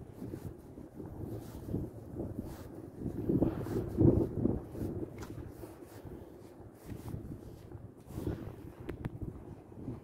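Wind buffeting the microphone in uneven gusts, a low rumble that swells and fades and is strongest about three to four and a half seconds in.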